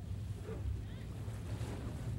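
Outdoor location sound on the water: a steady low rumble of wind and boats, with faint distant voices.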